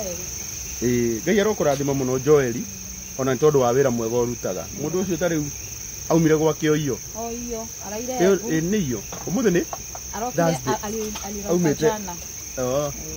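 Crickets chirring steadily in a continuous high-pitched drone, under a man talking throughout.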